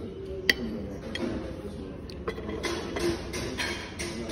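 A metal spoon clinks sharply against a ceramic plate about half a second in, then taps lightly on it twice more. Near the end come close-miked chewing sounds, in quick repeated bursts.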